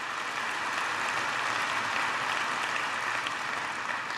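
Large audience applauding: a steady, even clatter of many hands that eases slightly near the end, with a faint steady high tone underneath.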